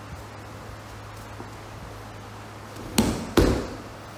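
A body landing in a breakfall on dojo mats: two thuds about half a second apart near the end, as the thrown partner hits the mat.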